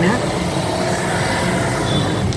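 Steady road-traffic noise of a busy city street, heard from inside a car, with engines running and vehicles passing.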